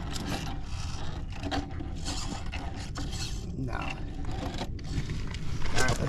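Electric RC rock crawler's motor and gears whirring in short spurts as it is driven up a steep rock, with its tyres scraping and grinding on the stone.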